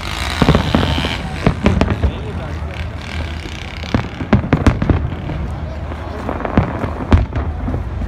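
Aerial fireworks bursting overhead: irregular bangs and crackles, some single and some in quick clusters, with the voices of a crowd underneath.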